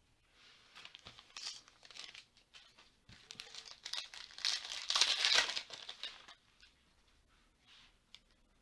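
A trading-card pack's foil wrapper being torn open and crinkled, in a run of rustling bursts that is loudest about five seconds in.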